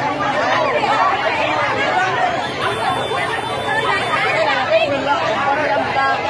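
A crowd of people talking at once: a steady, loud babble of many overlapping voices close around the microphone.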